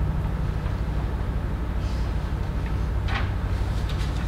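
Steady low hum of room noise, with a faint short rustle or click about three seconds in.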